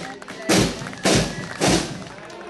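School marching band drums: three heavy drum beats, deep with a bright crash on each, about half a second apart, starting about half a second in.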